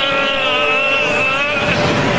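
Cartoon fight soundtrack: a long, strained shout held with a slowly wavering pitch over a steady rushing energy-blast effect. The shout breaks off near the end while the rushing goes on.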